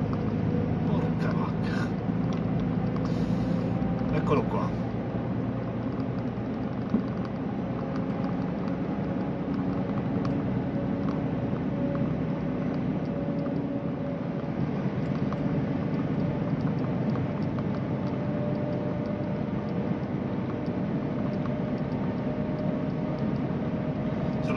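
Vehicle's engine and tyres running at a steady cruising speed through a road tunnel, heard from inside the cab: an even low drone with a few held engine tones.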